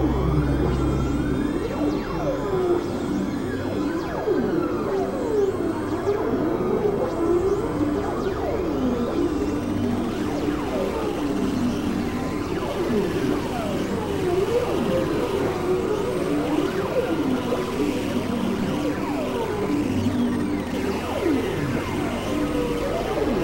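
Experimental synthesizer drone music: many overlapping tones slide up and down in pitch, like whale calls, over a continuous bed of sound. A low droning tone drops out about a second in.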